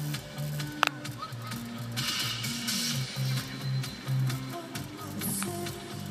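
Music playing through a car's in-dash stereo, heard inside the cabin, with a steady repeating low-note pattern. A short burst of hiss comes about two seconds in.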